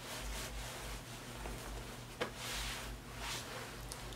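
Faint rustling of a winter coat's fabric as the wearer moves and turns, with one sharp click about two seconds in, over a steady low room hum.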